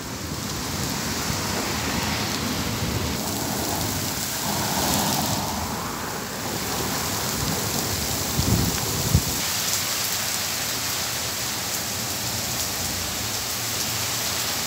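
Heavy rain of large drops falling steadily on pavement and a street at the start of a sudden downpour. Two brief low rumbles come a little past halfway.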